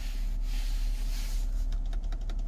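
Steady low hum in a vehicle cabin, with a hiss of static from the VW infotainment radio's speakers as the radio switches sources, and a quick run of faint clicks near the end.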